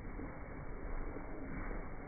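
Zwartbles ewes bleating, slowed right down in slow-motion playback so the calls come out deep, drawn-out and muffled, sounding like whale song from underwater.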